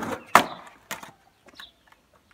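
Skateboard deck and wheels hitting the asphalt as a frontside 180 is landed: a sharp crack about a third of a second in, a second knock about a second in, then a few faint clicks as the board rolls on. The landing is not a clean one.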